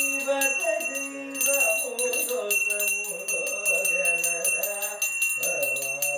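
A man singing a devotional song over a brass pooja hand bell that is rung rapidly and without a break, except for a short pause about a second in.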